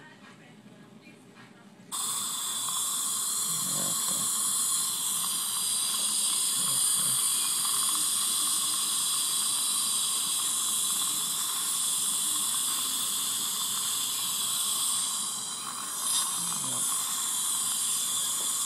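Dental saliva ejector suction through a disposable SweFlex tongue-guard ejector: it cuts in abruptly about two seconds in and runs with a steady hiss as it draws air and saliva from the mouth. It dips briefly near the end and then gives a short louder catch. The reviewer judges this product's suction weak.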